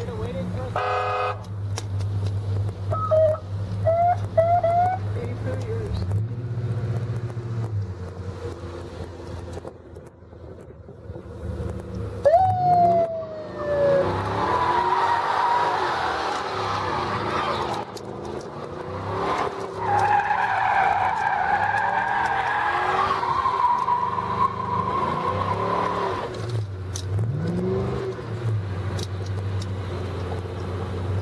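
Cars spinning donuts on asphalt. Tyres squeal in long, steady screeches through the middle and later part, while engines rev up and down over a steady low engine hum.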